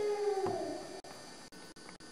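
A single drawn-out vocal note that slides down in pitch and fades away within about a second, with a click about half a second in; after it there is only faint room sound.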